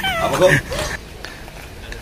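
A woman's high-pitched, wavering voice in the first second, a short whiny or squealing exclamation, then a quieter stretch.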